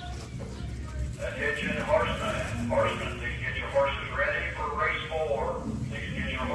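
Indistinct talking, voices starting about a second in and running on, over a steady low background hum.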